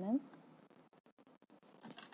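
Pencil writing on paper: faint scratching with small clicks and taps of the lead on the sheet.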